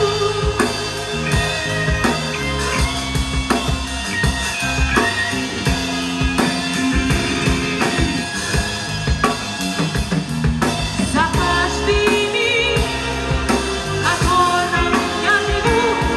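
A big band of brass, saxophones, double bass, keyboard and drum kit playing a pop-song arrangement live, with the drum kit's snare and bass drum beating steadily.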